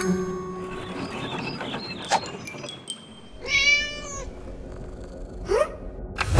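A cartoon cat's meow: one drawn-out yowl of under a second, about halfway through. Before it there is a sharp click, and near the end a quick rising sound effect.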